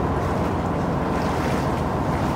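Vaporetto engine running steadily under way, with water rushing against the hull: an even, continuous rumble and wash.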